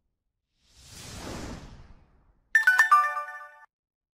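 Animated like-and-subscribe sound effects: a soft whoosh about a second in, then a short bright chime of several quick bell-like notes at about two and a half seconds, ringing out for about a second.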